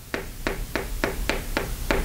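Chalk writing on a blackboard: a quick, even run of sharp taps, about five or six a second, as the chalk strikes the board with each stroke.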